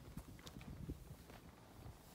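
Faint footsteps of a hiker walking on a dry dirt trail strewn with dead leaves and twigs, about two steps a second.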